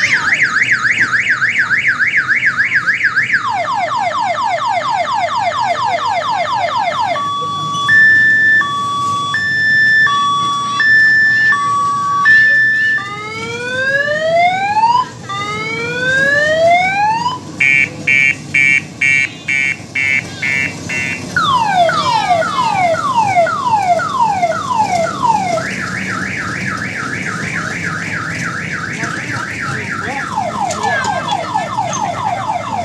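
Electronic multi-tone siren of an odong-odong mini train, cycling through its sounds: a fast warble, a run of falling sweeps, a two-tone hi-lo, rising whoops, rapid beeping, then falling sweeps and the warble again.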